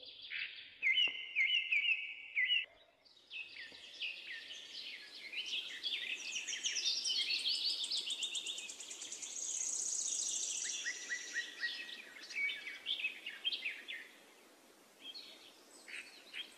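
Small birds chirping and calling, a few repeated short notes at first, then a dense overlapping run of quick chirps and whistles that thins out near the end.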